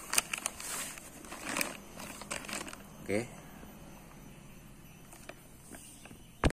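Clear plastic bag crinkling and crackling as it is handled, in a quick run of sharp crackles over the first two and a half seconds, then quieter.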